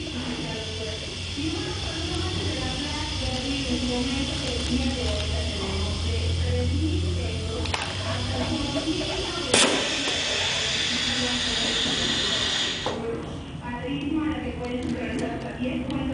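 Piston filling machine dispensing chunky salsa into a cup: a steady hiss with a low hum underneath, a sharp click about halfway through, and the hiss cutting off suddenly a few seconds later.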